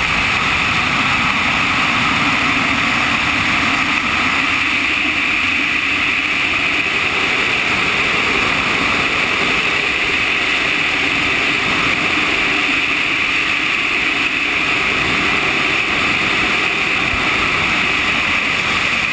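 Steady rush of airflow over a camera mounted on a radio-controlled ASH 25 scale sailplane in gliding flight, an even hiss with no breaks.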